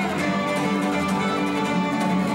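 Violin and cutaway acoustic guitar playing a jazz tune together, the bowed violin over the guitar's accompaniment, continuous and steady.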